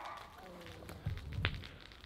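Faint, soft low thuds of footsteps on dirt and grass, with one sharp click about a second and a half in.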